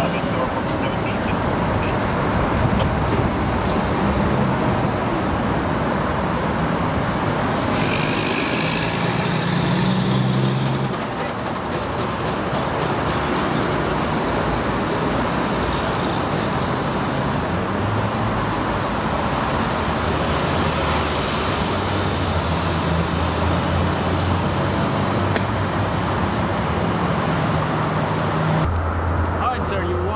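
Steady expressway traffic noise: cars and trucks passing on the highway below, with a low engine hum throughout.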